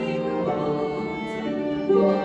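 Live chamber music from a violin, cello and concert harp trio, playing held notes that change every half second or so.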